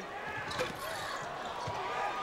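Arena crowd noise during live basketball play, with two short thuds of the ball on the hardwood court about a second apart.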